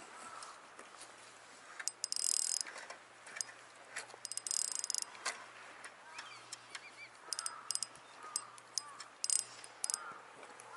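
Small handling noises from a rod and spinning reel: scattered sharp clicks, with two short rasping bursts about two seconds in and again near five seconds.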